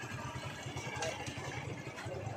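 Motorcycle engine running at low revs, a steady, even low throb.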